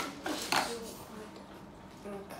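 Small scissors snipping through a doll's plastic packaging: a sharp snip at the start, then a second short crisp sound about half a second in.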